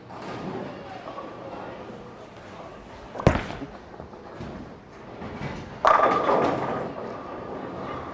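A bowling ball (Storm Night Road) thuds onto the lane at release about three seconds in and rolls down the lane. About two and a half seconds later it hits the pins: a loud clatter of pins that rings on and fades.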